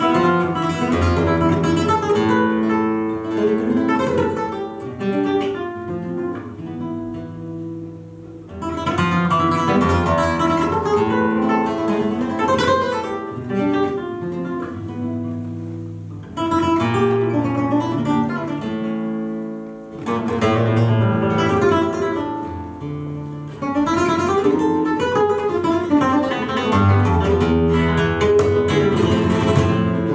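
Solo flamenco guitar playing a soleá: several phrases that each open with a loud strummed attack and run on into picked notes that fade before the next phrase.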